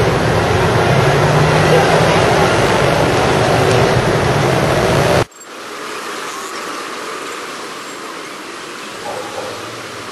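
Dense road traffic, with the steady rush of many engines and tyres. About five seconds in it cuts suddenly to quieter traffic noise.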